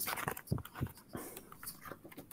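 A braille book being handled and opened close to an earphone microphone: a quick run of short clicks, rustles and small knocks from the cover and pages, with a couple of soft thumps in the first second.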